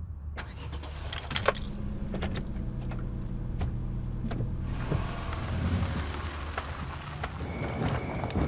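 Car engine running with a steady low hum. A few sharp clicks come in the first second and a half, and a broader rushing noise joins about five seconds in.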